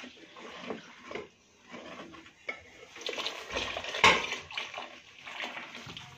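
Water poured from a jug into a steel pot of yogurt and gram-flour curry mixture, splashing unevenly, while a steel ladle stirs against the pot. There is one sharp knock about four seconds in.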